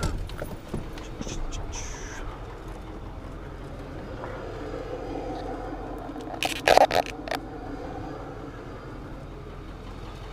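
Ford pickup tow truck's engine idling steadily, with a short cluster of loud knocks and clatters about six and a half seconds in.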